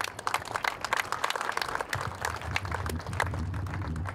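An audience applauding: many hand claps, thickest in the first half and thinning out toward the end, with a low hum coming in about halfway through.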